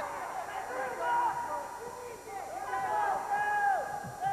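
Raised, high-pitched voices shouting from around a college wrestling mat, calling out in short phrases while the wrestlers scramble for a takedown.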